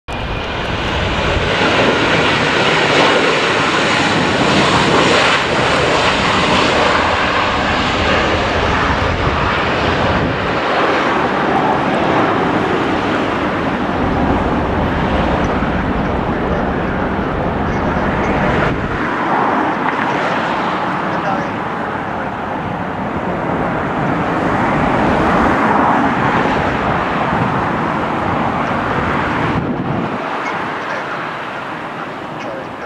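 Boeing 777's jet engines running at taxi thrust as the airliner rolls along the taxiway: a loud, steady noise that swells and eases, its low rumble thinning out a little past halfway.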